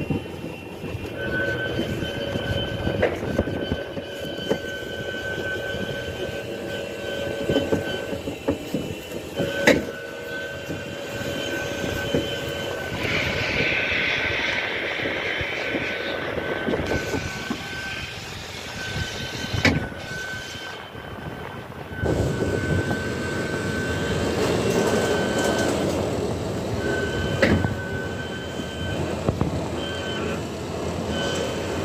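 Track-guided ride car running along its guide rail, a steady rumble with a thin high whine that keeps cutting in and out. A few sharp knocks sound as it goes.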